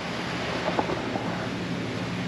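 Steady hiss of a shop fan with a low hum underneath, and a few faint clicks a little under a second in.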